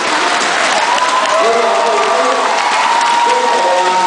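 Hall audience applauding and cheering, with a voice over it that draws out one long high note in the second half.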